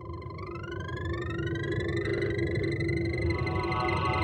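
Instrumental intro of a synth-pop track: synthesizer tones with repeated upward-sweeping pitch glides over a low rumbling drone, swelling in loudness.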